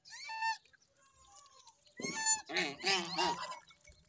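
Domestic white geese honking: one short call at the start, then a run of about four harsh honks from about two seconds in. A gosling's thin peep sounds faintly between them.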